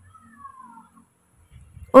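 A faint cat meow: one pitched call falling in pitch, lasting under a second.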